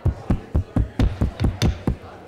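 Wooden gavel rapped repeatedly on the dais, about nine quick strikes in two seconds, calling the room to order.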